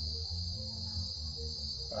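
A steady, high-pitched insect chorus, with a low rumble underneath.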